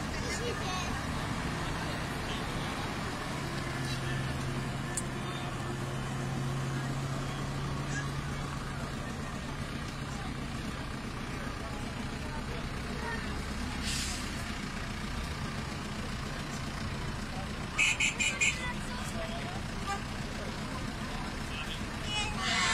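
Vintage truck engines running, with one old truck pulling slowly away across the lot, under the chatter of onlookers. About four seconds before the end comes a quick run of four short, loud, high beeps.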